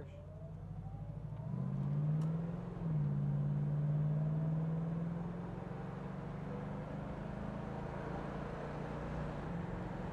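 A 1970 Plymouth Cuda's 383 V8 accelerating through the gears, heard from inside the cabin. The revs climb for about two seconds and drop at a gear change about three seconds in. The engine then pulls steadily in the next gear and eases off after about five seconds.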